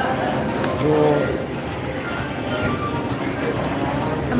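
Video slot machine playing its electronic chimes and jingle as a win is tallied and the reels spin again, over a steady background of casino-floor voices and machine noise.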